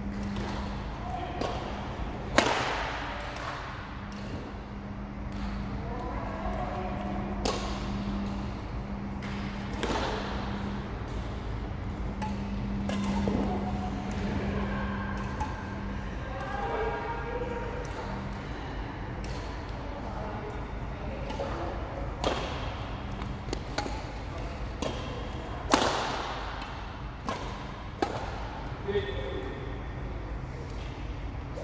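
Badminton rackets striking a shuttlecock during a doubles rally: sharp, short cracks every two or three seconds, with one loud crack early on and another a little past three-quarters through, each with a short echo in a large hall. A steady low hum and faint voices sit beneath them.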